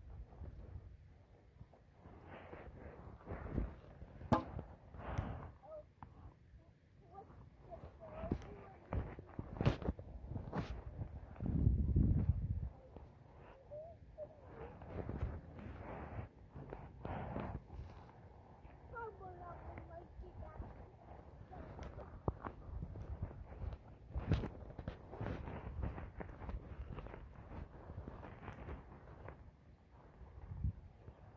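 A plastic toy bat hitting a light toy ball, with a sharp knock about four seconds in and more knocks scattered through, amid footsteps on grass. A loud low rumble of wind or handling on the phone microphone comes around twelve seconds in.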